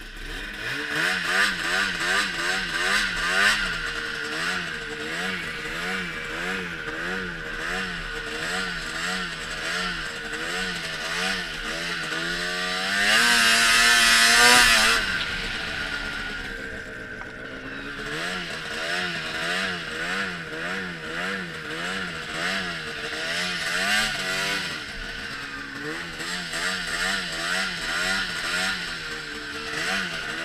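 Ski-Doo snowmobile engine running as the sled rides across snow, its pitch wavering up and down about twice a second. About halfway through it revs higher and louder for a couple of seconds, then drops back.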